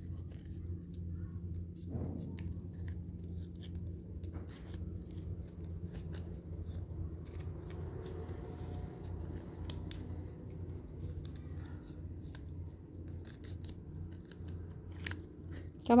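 Thin red craft paper being folded and creased by hand, with small irregular crackles and clicks of the paper over a steady low hum.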